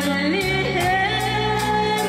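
A woman singing into a stage microphone over a band accompaniment with bass and a steady drum beat, holding long notes with vibrato and stepping up in pitch about half a second in.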